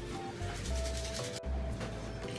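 Cute, light background music: a simple melody over deep bass notes and a scratchy, shaker-like rhythmic percussion, with a brief break about one and a half seconds in.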